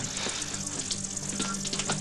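Steady hiss and crackle of a noisy old analogue TV recording, with a low steady hum held underneath.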